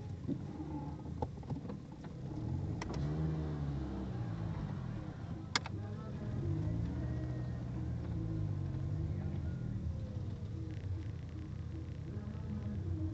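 Car engine revving up and back down twice, heard from inside a car cabin, with a few sharp clicks, the loudest about halfway through.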